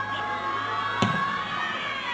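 Small crowd of spectators shouting in long drawn-out calls during a football free kick, with one sharp thud about a second in as the ball is struck.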